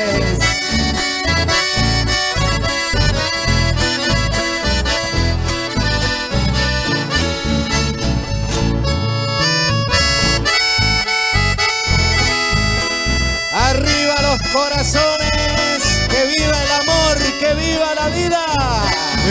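Live band playing an instrumental chamamé passage: an accordion carries the melody over a steady, rhythmic bass beat.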